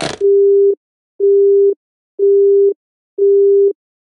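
Telephone busy tone after the call is hung up: four steady single-pitch beeps, each about half a second long, about one a second.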